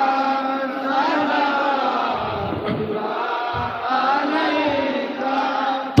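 Men's voices chanting a devotional salam to the Prophet, unaccompanied, in a slow melody with long held, sliding notes.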